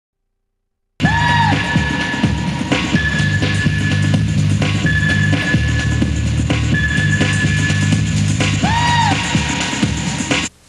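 Music with a drum beat and a repeating low bass figure, starting suddenly about a second in after silence. A high held tone returns about every two seconds, and a pitch swoop up and down sounds near the start and again near the end.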